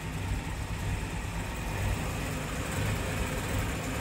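Land Rover Series III petrol engine idling steadily after a tune-up with a new Weber carburettor. It runs better than before but is still a little choppy.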